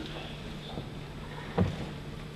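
Room tone through the podium microphones during a pause in speech: a steady low hum and faint hiss, with one short, soft low sound about a second and a half in.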